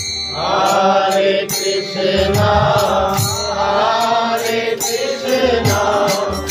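Devotional kirtan: a man singing a chant over a harmonium's held chords, with low thumps and sharp clicks keeping a rhythm beneath.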